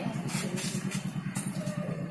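Auto-rickshaw engine idling with a steady low drone.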